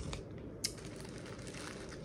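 Faint crinkling of plastic drink-mix stick packets and their packaging being handled, with one sharp click about two-thirds of a second in.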